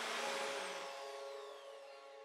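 Electric drill boring into a plastered wall. The motor noise is loudest near the start and eases off, with a high whine falling in pitch as it slows.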